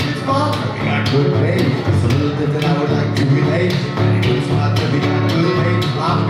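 Live solo blues on a resonator guitar, picked in a steady driving rhythm with a thumping bass line, while a man sings over it.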